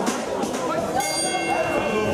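Ring bell struck once about a second in, its metallic tones ringing on and fading, signalling the start of the second round.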